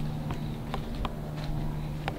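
A few soft footsteps as someone walks up close, over a steady low hum.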